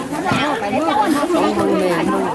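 Several people talking over one another, Vietnamese chatter with no other sound standing out.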